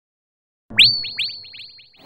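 Comic sound effect, starting less than a second in: a string of quick electronic chirps, each sweeping up to the same high pitch, coming faster and fading away.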